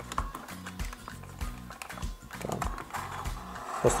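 Background music with irregular small clicks and scratches of a snap-off utility knife slitting the edge of a plastic and cardboard blister pack.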